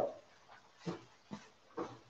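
Pork fried rice frying in a hot pan: a few short, faint crinkly crackles in the second half.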